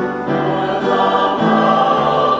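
Small mixed church choir singing a sacred anthem in parts, with held notes changing pitch a couple of times, accompanied by piano.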